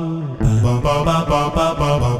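Roland GR-33 guitar synthesizer played from a Godin LGX-SA's 13-pin pickup, sounding a voice-like synth patch. A held note gives way, about half a second in, to a quick run of short repeated notes, about six a second, over a lower sustained line.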